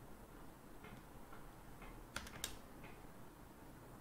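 Stylus tapping on a tablet screen while writing numbers: a few faint ticks, with two sharper clicks about two seconds in, over quiet room tone.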